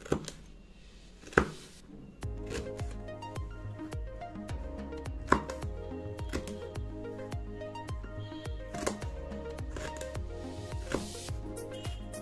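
A chef's knife slicing a green bell pepper and striking a wooden chopping board: two sharp knocks, then more light knife taps. About two seconds in, background music with a steady beat comes in over the cutting.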